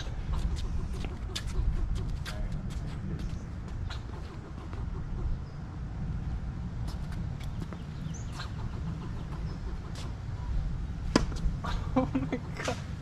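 Steady low outdoor rumble with scattered light taps and knocks, and a sharper knock near the end.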